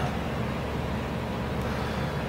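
Steady background hum and hiss, even throughout, with no voice or music over it.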